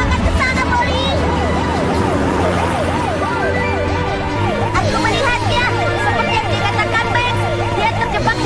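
Emergency-vehicle siren in a fast yelp, its pitch sweeping up and down about three times a second.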